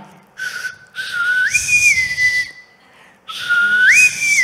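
A woman whistling a call twice through pursed lips, with breathy air noise. Each call starts on a low note, jumps up, then steps down to a held middle note. It imitates a finger whistle used to call children home.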